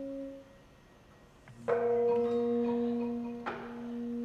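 Gamelan bronze metallophones and gongs: the previous notes ring out and fade to a near pause, then, about one and a half seconds in, several instruments are struck together and their notes ring on, with another stroke near the end.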